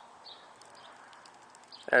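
Faint, even background noise with a few faint, high, short chirps near the start; a man's voice begins right at the end.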